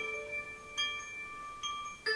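Mobile phone ringing with a chiming ringtone: bell-like notes, a new note struck about every 0.8 seconds, each ringing on until the next.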